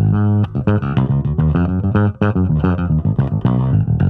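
Electric bass guitar played fingerstyle: a quick run of plucked notes.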